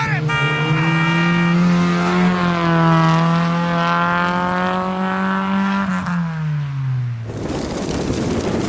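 Rally Fiat Seicento's four-cylinder engine running hard at high revs as the car drives away through a hairpin. The note holds steady, then falls in pitch near the end and cuts off suddenly.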